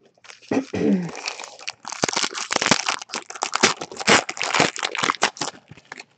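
A trading-card pack's wrapper crinkling and being torn open by hand: a dense run of crackling lasting about five seconds.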